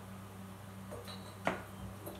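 A single sharp knock of the bottling tube's end against a glass beer bottle as it is lowered into the neck, about one and a half seconds in, over a low steady hum.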